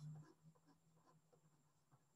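Near silence with the faint, intermittent scratching of a pen writing by hand on paper, with a brief low hum right at the start.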